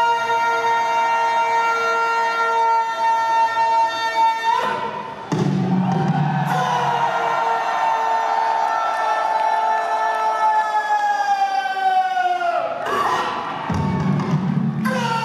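Long-drawn shouted drill command from a border guard, a single held yell that breaks off about a third of the way in. After a short burst of crowd cheering, a second, longer held yell follows and drops in pitch as it dies away near the end.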